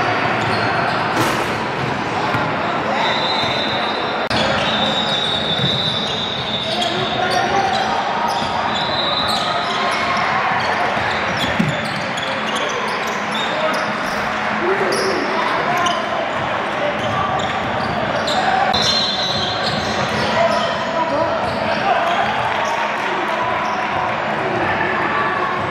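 Live basketball game sound echoing in a gym: a basketball bouncing on a hardwood court, sneakers giving short high squeaks, and indistinct shouts and chatter from players and onlookers.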